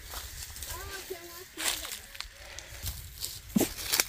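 Faint voices talking a little way off, briefly, about a second in, with a few light clicks and rustles of handling or steps on grass.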